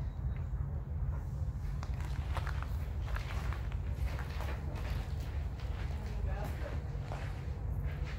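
Footsteps crunching on a gravel floor at a slow walking pace, about two steps a second, starting about two seconds in, over a steady low rumble.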